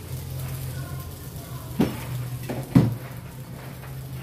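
A ladle stirring thick spaghetti sauce in a pot, with two sharp knocks of a utensil against the pot about two and three seconds in, over a steady low hum.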